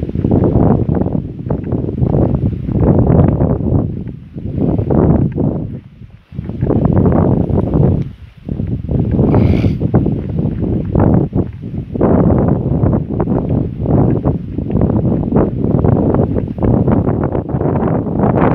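Wind buffeting the microphone in loud, low gusts, with brief lulls about six and eight seconds in.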